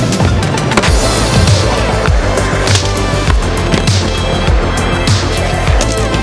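Skateboard wheels rolling on ramps with a few board knocks, under loud background music.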